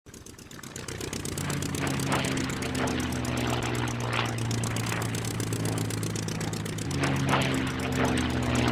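Propeller-plane engine drone, a sound effect for an animated biplane, fading in over the first second and then running steadily with a fast buzz. A few brief whooshes pass over it.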